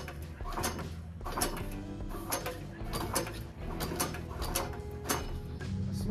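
Small gasoline engine's recoil pull-starter yanked several times, the cord zipping out and the engine turning over without catching, over background music. The owner blames old gas and a gunked-up carburetor for the hard starting.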